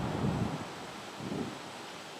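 A man swallowing as he drinks from a can, two soft low gulps, over light wind noise on the microphone.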